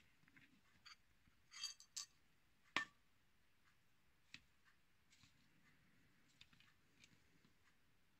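Near silence with a few faint clicks and clinks of small metal parts being picked up and set down while hair shears are reassembled, the sharpest click about three seconds in.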